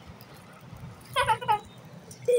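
Two short, high-pitched squeals from a child, close together, a little over a second in.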